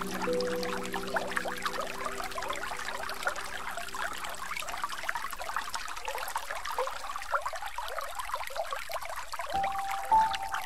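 Trickling, splashing water of a small stream or cascade, steady throughout. Held low music notes fade out over the first half, and a new higher note comes in near the end.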